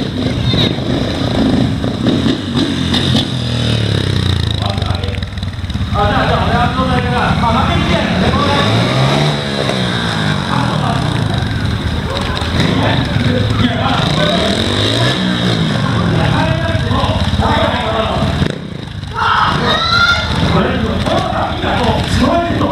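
Trials motorcycle engine revving, its pitch rising and falling twice while the rider manoeuvres the bike, under a man talking over a loudspeaker.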